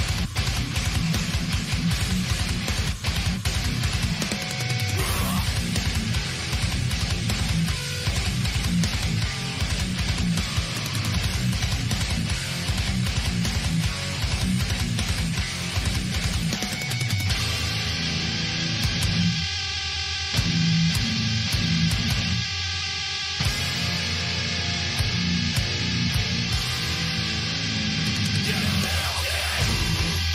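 Beatdown deathcore song with heavy electric guitars: a dense, fast-pulsed passage that changes about 17 seconds in to a slower, sparser section broken by short pauses.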